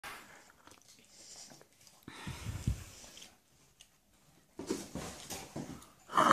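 A child eating toast: quiet chewing and mouth sounds, with a few soft low thumps a little after two seconds in.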